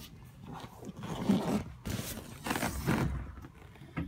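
Rustling and bumping handling noise in a few bursts as the boat's engine hatch is lifted open; the engine is not running.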